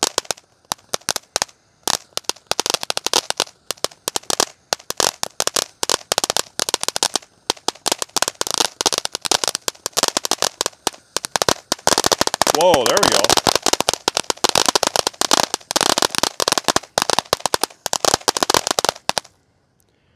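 Consumer firework fountain spraying sparks with a crackle effect: a dense, uneven rattle of sharp little pops that cuts off abruptly about a second before the end.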